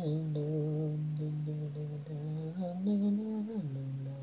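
An unaccompanied solo singing voice, an isolated a cappella vocal with no backing, holds one long note with a slight waver. It steps up in pitch about two and a half seconds in and drops back down shortly before the end.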